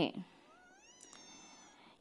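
A faint high-pitched cry that rises in pitch for about half a second and then holds for about a second, with a light click partway through.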